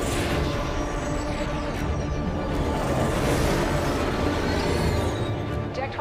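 Tense dramatic film score music with a deep low rumble of starship sound effects underneath, swelling twice.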